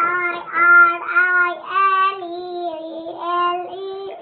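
A young child singing in a high voice, a run of held notes with little change in pitch.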